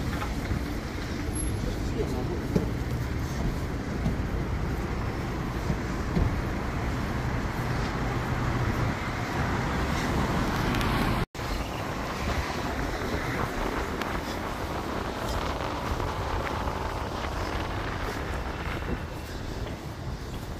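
Steady city road traffic noise from a busy avenue, cars and trucks passing. The sound drops out for an instant about halfway through, then the same traffic noise carries on.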